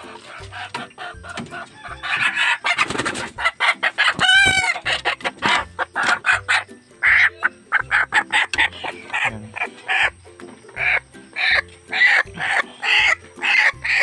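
A chicken squawking loudly and repeatedly as it is caught and held by hand, with one long cry about four seconds in and a string of short squawks through the second half, over background music with a steady beat.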